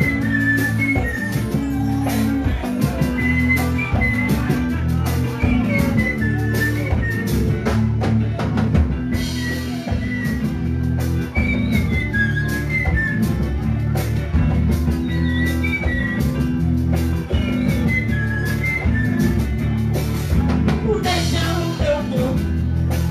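Live band playing amplified axé music: a steady drum beat and heavy bass under electric guitar, with a high melody line of short repeated notes.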